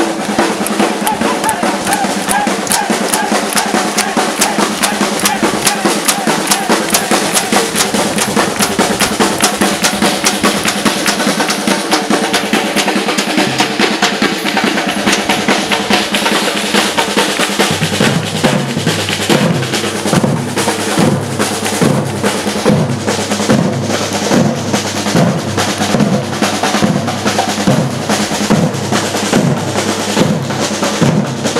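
Batucada drum ensemble playing together: large surdo bass drums and snare drums beaten in a dense, driving rhythm. About eighteen seconds in, the deep bass drum beat comes through stronger and more regular.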